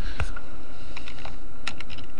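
Typing on a computer keyboard: a few separate keystroke clicks, the loudest a fraction of a second in.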